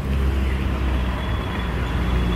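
Steady road traffic noise: a continuous low rumble of city traffic with no single vehicle standing out.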